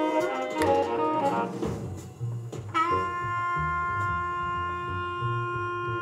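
Jazz recording played back through a small valve amplifier and bookshelf speakers in the room: a saxophone line, then one long held note from about three seconds in, over a bass line.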